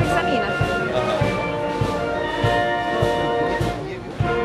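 Amateur brass band playing a march live, with held brass chords over a steady low beat about every 0.6 seconds. The music drops out briefly at the very end.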